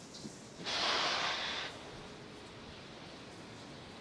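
Pressure venting from a Falcon 9 rocket and the plumbing of its transporter erector on the launch pad: a hiss lasting about a second, starting just under a second in, over a faint steady background.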